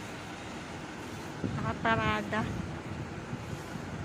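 Steady city street background noise, the even hum of road traffic, with a brief voice about two seconds in.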